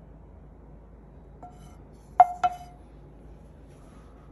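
A faint tap, then two sharp clinks about a quarter second apart, each with a short ringing tone: dishware knocking as steak is served onto a plate with a wooden spatula.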